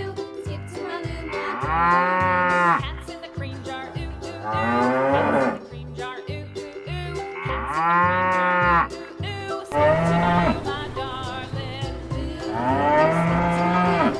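Cows mooing: about five long calls a few seconds apart. Background music with a steady beat plays underneath.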